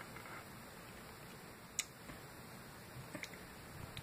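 Quiet room tone with one sharp click about two seconds in and a few faint ticks a little later.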